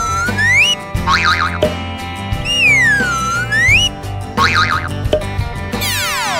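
Cheerful children's cartoon music with comic sound effects over it: two whistle-like swoops that dip and rise again, each followed by a short wobbling boing, and a long falling slide whistle near the end.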